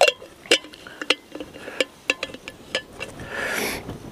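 Clicks and clinks of a metal drinking bottle's screw cap being handled and turned, irregular, roughly one every half second. A short soft hiss comes near the end.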